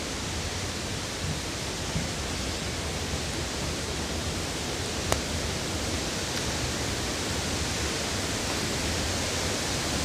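Park waterfalls: a steady rush of falling water, with one brief click about five seconds in.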